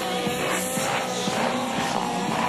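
Music with a steady beat, and under it the steady whine of an Align T-Rex 700 nitro RC helicopter's engine and rotors in flight.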